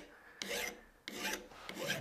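A mill bastard file rasping across the steel ball peen of a hammer head held in a vise, in rolling strokes that reshape the dome and cut out dents: a short stroke about half a second in, then a longer one starting about a second in.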